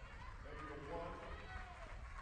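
Faint outdoor field sound at a youth flag football game: distant voices of players and people on the sideline calling out, over a low steady background hum.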